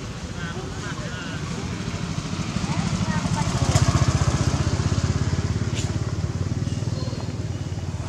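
A motorcycle engine passing by, its low, evenly pulsing note growing louder to a peak about halfway through and then fading away.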